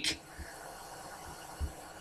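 Quiet pause: faint steady hiss of room tone, with one soft low thump about one and a half seconds in.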